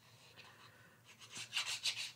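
Faint scratchy rubbing of a glue bottle's tip drawn across cardstock as glue is laid on, a few light strokes at first and a quick run of stronger ones in the second half.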